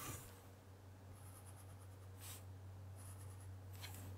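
Faint felt-tip pen strokes on paper, about four short scratches drawing the sides of a box, over a low steady hum.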